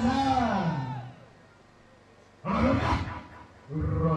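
A loud, drawn-out shout in prayer that trails off about a second in. After a short quiet comes a second sudden shout, and another voice rises near the end.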